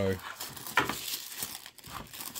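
Crinkling and rustling of a thin wrapping sheet being pulled off a carded, blister-packed action figure, in several short bursts.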